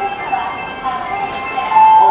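Electronic chime melody of steady, bright notes played over a public-address speaker: a station departure melody while the train stands at the platform.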